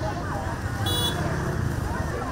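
Busy open-air market ambience: shoppers and vendors talking over a low rumble of traffic. A short high horn beep sounds about a second in.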